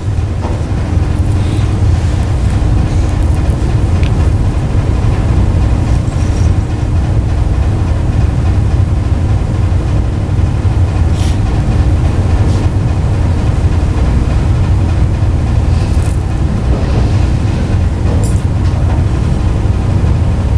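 A loud, steady low rumble with a faint steady hum above it and a few faint ticks, coming through the room's sound system as a presentation video starts.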